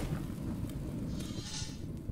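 Low, noisy rumble trailing off after the final hit of a channel intro jingle, with no melody left in it.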